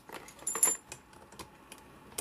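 Metal connectors on a short coax patch cable clicking and clinking as the cable is handled, with one brighter ringing metallic clink about half a second in and light ticks after.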